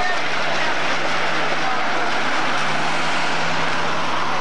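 A steady, even motor engine drone over a constant noisy outdoor background.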